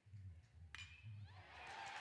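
Near silence: a faint low hum and one faint, sharp metallic ping about three-quarters of a second in, a metal bat meeting the pitch for a line drive.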